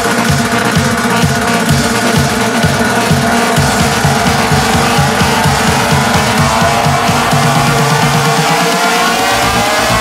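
Instrumental build-up in a vocal house remix: a pulsing bass line under a synth sweep that rises steadily in pitch through the second half, the bass thinning out near the end ahead of the drop.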